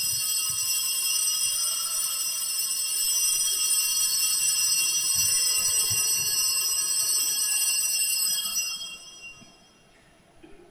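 Altar bells (sanctus bells) shaken in one continuous, steady ringing, marking the elevation of the consecrated host; the ringing stops near the end.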